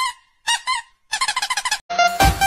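High-pitched honking squeaks: a few single honks with bending pitch, then a fast chattering run of them near the end.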